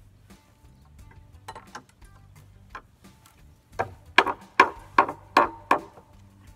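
Hand saw cutting across an old weathered wooden board: a few light strokes to start the cut, then about six quick, loud strokes, roughly two and a half a second, in the last two seconds.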